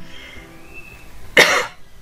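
A person coughing once, a short sharp cough about one and a half seconds in.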